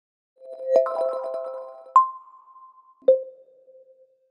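Short synthesized intro jingle for a logo: a cluster of pitched notes, then two single ringing notes, a higher one about two seconds in and a lower one about a second later, each fading out.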